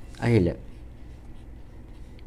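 Fountain pen nib scratching faintly on paper as figures are written, after one short spoken word near the start.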